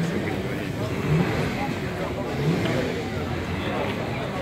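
Crowd hubbub: many people's indistinct voices close around, over a steady background din.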